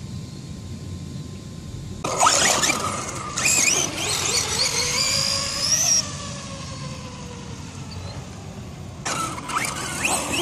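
Electric RC monster truck driving on asphalt: its brushless motor whines high, rising and falling as it speeds up and slows, with tyre noise. The sound starts about two seconds in, is loudest for the next few seconds, fades as the truck gets farther away, and picks up again near the end.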